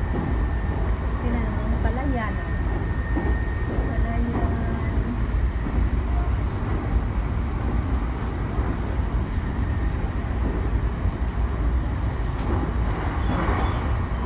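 Interior of a moving Shinano Railway commuter train: the steady low rumble of the running carriage and its wheels on the rails, with a thin high steady whine that fades out in the first few seconds.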